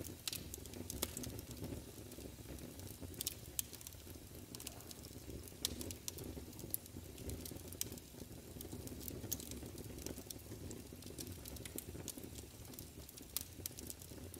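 Faint steady low rumble with many scattered crackles and pops throughout.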